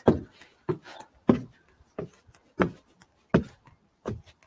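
Footsteps climbing wooden deck stairs: about six steps at an even pace, roughly one and a half a second.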